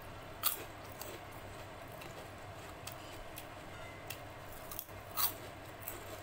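Close-up crunching of a crisp fried papad snack being bitten and chewed: two loud, sharp crunches, about half a second in and about five seconds in, with smaller crackles of chewing between them.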